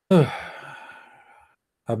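A man's sigh: a voiced exhalation that starts suddenly, falls in pitch and trails off into breath over about a second and a half. Speech follows near the end.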